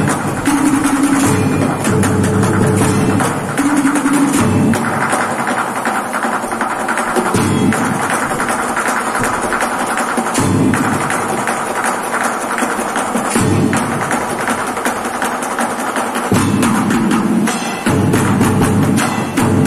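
Improvised percussion ensemble beating drumsticks on plastic paint buckets and a plastic barrel: a fast, steady rhythm of sharp, clicky strikes. Deeper strokes come in and drop out in sections of about three seconds.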